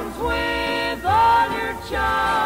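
Harmony singing in a slow nostalgia-era song, with held notes and vibrato changing every second or so. The sound is narrow and thin, as in an AM radio broadcast recording.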